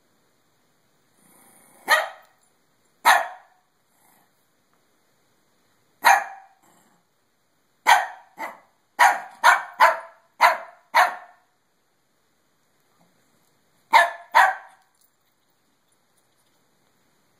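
Shih Tzu barking in short, sharp single barks with pauses between: two about two and three seconds in, one at about six seconds, a quick run of about seven from eight to eleven seconds, and a pair near the end.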